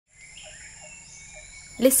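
Tropical rainforest ambience fading in: a steady high-pitched insect drone with bird chirps and a few short, repeated lower calls.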